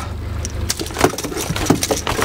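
Outboard motor running steadily at trolling speed, a low hum, while a few light metallic clicks and taps come from needle-nose pliers working a hook and crankbait free of a king salmon in a landing net.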